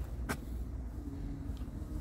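Iveco Eurocargo's diesel engine idling, a steady low rumble, with one sharp click about a third of a second in.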